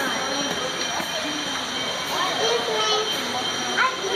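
A steady background hiss, with faint voices of people and children talking in the distance now and then.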